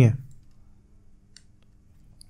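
A man's voice finishes a word, then it is quiet apart from a faint steady hum. A couple of faint short clicks come a little past the middle.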